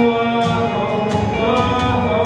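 A man singing through a microphone over a musical accompaniment, holding long notes.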